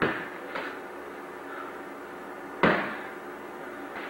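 Padded pugil sticks striking each other in sparring: a hard smack right at the start, a lighter knock about half a second later, and a second, louder smack about two and a half seconds in, each with a short echo.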